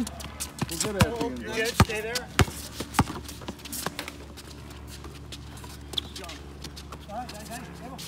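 A basketball being dribbled on a hard outdoor court, about five sharp bounces in the first three seconds, with players shouting over the early bounces.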